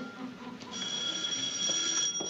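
Telephone bell ringing with an incoming call: a steady high ring that pauses briefly and starts again about three-quarters of a second in.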